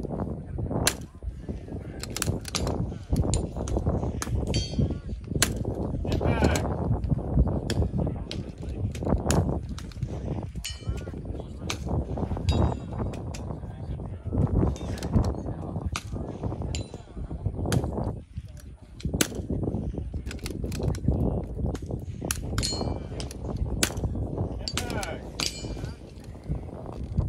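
Sharp cracks of .22 rimfire rifle shots, many of them at irregular intervals, over heavy wind rumble on the microphone.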